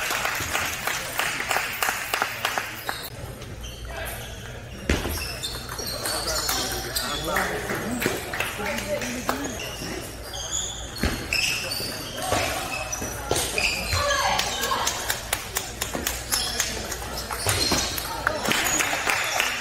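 Table tennis balls clicking off paddles and tables, many irregular sharp ticks and bounces, with people talking in the background.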